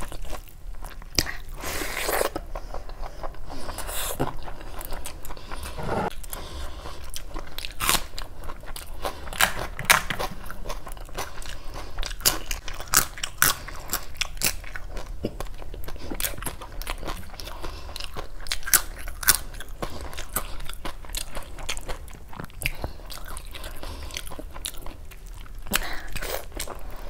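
Close-miked chewing and biting of handfuls of rice and curry eaten by hand, a dense, irregular run of sharp wet clicks, with fingers mixing rice into the curry at the start.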